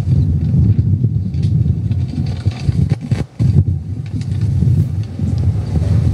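Wind buffeting an outdoor microphone: a loud, low, fluttering rumble, with a brief drop about three seconds in.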